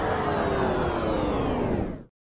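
Cinematic intro sound effect under the title cards: a dense noisy hit with several tones sliding slowly downward as it darkens, then cutting off suddenly at the end.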